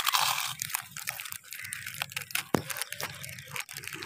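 Packet chips being bitten and chewed close to the microphone: a run of short, crisp crunches, densest just at the start with the first bite.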